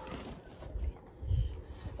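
Handling noise: a few dull low thumps and light rustling as school supplies and a backpack are moved about.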